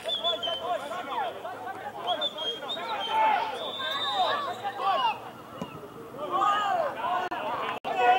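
Indistinct talk and chatter of men close to the microphone, with a murmur of other voices behind.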